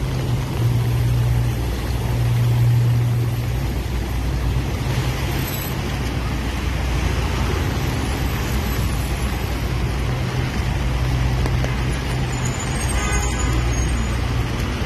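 Street traffic on rain-wet roads: a steady hiss over the low hum of running vehicle engines, the hum a little louder about two to three seconds in.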